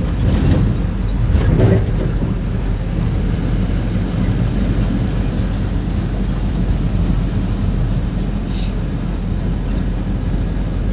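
Pickup truck driving at speed: a steady low engine and road rumble, with two louder swells in the first two seconds and a brief hiss near the end.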